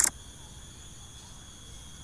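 Steady, high-pitched chirring of crickets, with a short sharp click right at the start.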